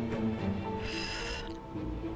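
Soft dramatic background music with sustained, held tones, and a short breathy hiss about a second in.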